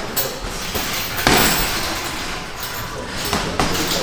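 Punches landing on a heavy punching bag: a few sharp thuds, the loudest about a second in, over the steady background noise of a busy gym.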